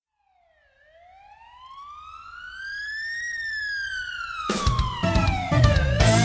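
A police siren wail fades in, rising slowly in pitch and then falling. About four and a half seconds in, music with drums comes in over it as the wail starts to rise again.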